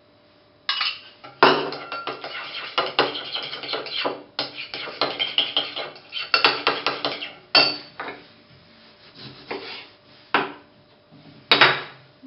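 Metal spoon beating egg yolk into sour cream in a porcelain bowl, clinking and scraping rapidly against the bowl from about a second in until nearly eight seconds. Then a few scattered clinks, with a sharper strike near the end.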